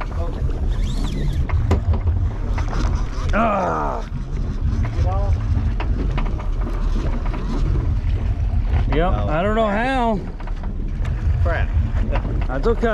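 Steady low rumble of wind on the microphone and sea noise around a small offshore fishing boat, with a few brief wavering voice sounds.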